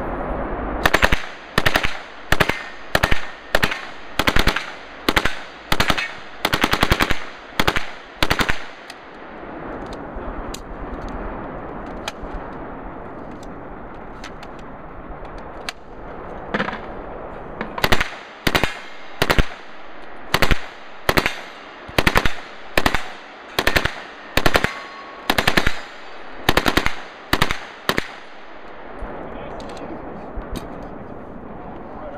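Open-bolt Uzi submachine gun firing short full-auto bursts in quick succession, about a dozen in the first nine seconds. A pause of several seconds with a single burst follows, then another run of about a dozen short bursts.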